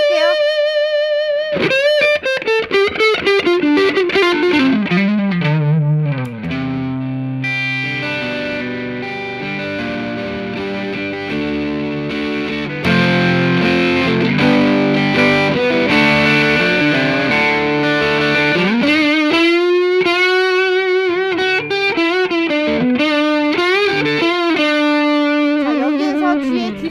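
Electric guitar played overdriven through an Ibanez TS9 Tube Screamer and Xotic Super Clean Buffer into a Fender Twin Reverb amp. Sustained lead notes with wide bends and vibrato open and close the passage, with chords and riffing in between. The level steps up about 13 seconds in.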